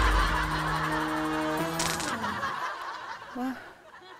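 Comedy TV sound effects: a deep boom that rumbles on, then a held, honking buzz for about a second and a half over a rushing noise. It ends with a short hissy burst about two seconds in.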